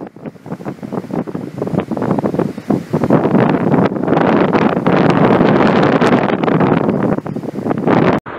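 Wind buffeting the microphone in loud, irregular gusts, building up over the first few seconds and then staying strong.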